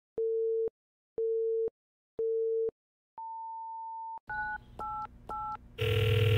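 Telephone line tones: three short low beeps about one a second like a busy signal, then a longer, higher beep, then three keypad dialing tones. A louder steady tone with a low hum begins near the end.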